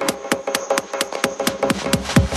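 Techno track in a DJ mix with the kick drum and bass dropped out, leaving quick ticking percussion over a held synth tone; the heavy bass comes back right at the end.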